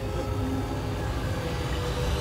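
A steady low rumble with a hiss above it and a faint held tone, with no clear onsets.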